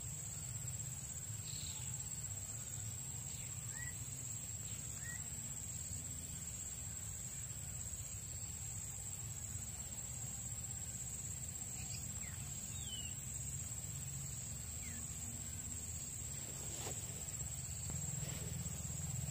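Outdoor insect chorus, a steady high drone in one note, over a faint low rumble, with a few short chirps here and there.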